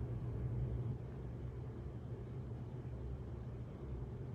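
A pause in speech holding only room noise: a steady low hum with faint hiss.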